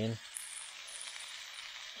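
Pork chop sizzling steadily in ghee in a frying pan over a camp stove.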